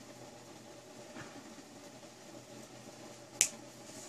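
Flush cutters snipping off the excess end of a ring's wire: one sharp snap about three and a half seconds in, after faint handling sounds.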